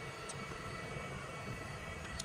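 iLife Shinebot W450 robot mop running: a steady, low-level motor hum with a faint high whine.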